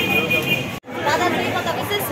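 Speech only: people talking, with a brief total dropout a little under a second in where the sound cuts off and resumes.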